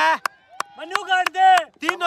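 Men's shouted calls, loudest about a second and a half in, with a few sharp clicks between them.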